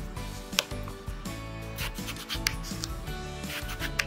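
A kitchen knife slicing through a whole eggplant, the blade sawing through the flesh with several sharp taps as it reaches the wooden cutting board, over background music.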